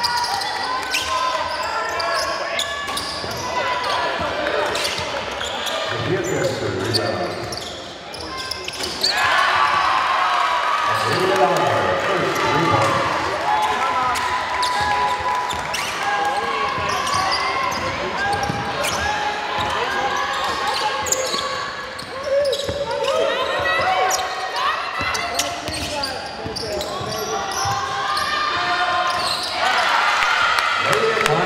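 Game sounds of a live basketball game in a reverberant sports hall: players' and spectators' voices calling out, with the ball bouncing on the court floor.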